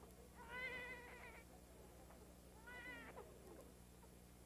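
A baby crying faintly in two short wavering cries, the first about a second long, the second briefer about three seconds in.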